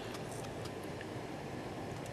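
Quiet room tone: a low, steady hiss with a few faint clicks.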